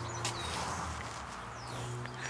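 Quiet outdoor background: a steady low hum with a few faint, high bird chirps and light handling clicks.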